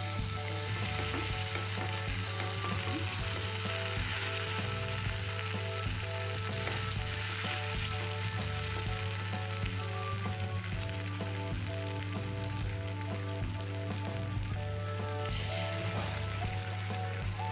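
Marinated chicken pieces shallow-frying in oil in a pan: a steady sizzle, with the pieces being turned over with metal tongs.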